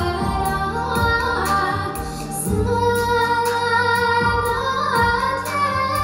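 A girl singing a Tatar song into a microphone, holding long notes with slides between pitches, over an instrumental accompaniment with bass and a steady beat.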